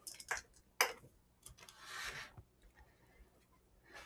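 Microphone handling noise as the mic is taken off: a few faint clicks in the first second, then a brief soft rustle about two seconds in.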